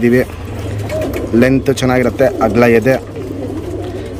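Domestic pigeons cooing in the background while a man talks over them.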